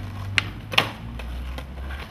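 Skateboard rolling on asphalt, with two sharp clacks of the board less than half a second apart, a little under a second in.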